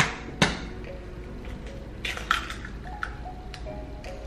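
An egg being cracked on the edge of a mixing bowl: two sharp taps near the start, then a few light clicks of the shell being pulled apart, over soft background music.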